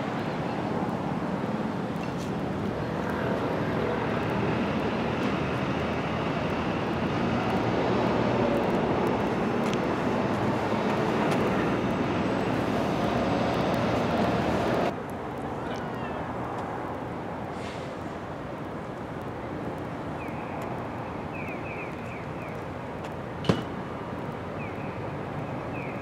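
Steady outdoor road-traffic noise that swells slightly over the first half, then drops abruptly to a quieter background hum about halfway through. A single sharp click comes near the end.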